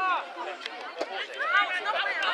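Several young voices talking and calling out at once, overlapping chatter, with a single sharp knock near the middle.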